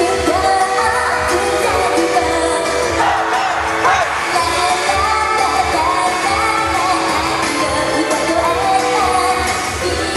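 A live J-pop song: a female solo voice sings over pop backing music with a steady beat, recorded from the audience.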